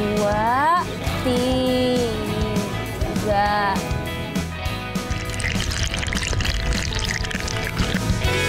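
Background music with a singing voice holding long notes that slide upward in pitch. In the second half, water is poured from a plastic dipper into a basin of leafy greens.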